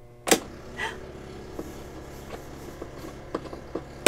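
An RV fresh-water pump switched on with a click at the wall panel, then running with a steady hum, which shows the pump works. Another sharp click comes at the very end as it is switched off.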